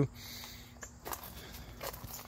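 A few faint, irregular footsteps crunching on a wood-chip mulch path, with a faint steady hum underneath.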